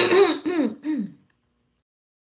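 A short, high-pitched wordless vocal sound in three pulses, each sliding down in pitch, lasting a little over a second.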